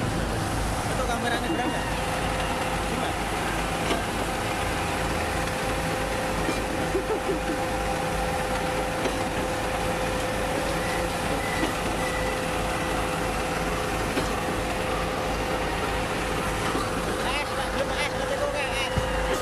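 Concrete pump and mixer truck running while concrete is pumped through the boom: steady engine rumble with a constant whine.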